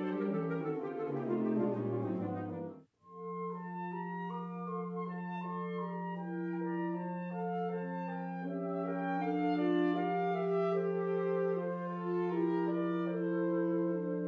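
Saxophone quartet of soprano, alto, tenor and baritone saxophones playing classical chamber music. Busy interweaving lines break off abruptly about three seconds in. After a moment of silence, a long steady low note is held beneath moving upper voices.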